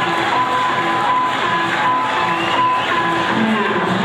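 Music playing at a steady loud level, a high note repeating over and over above lower notes, with crowd noise underneath. It is likely the traditional live ring music that accompanies Lethwei bouts.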